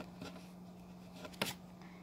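Quiet room with a faint steady hum and a single sharp click about one and a half seconds in.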